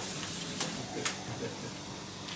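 Paper rustling as pages of a songbook are leafed through, with two brief crisp swishes about half a second and a second in, over a low room hiss.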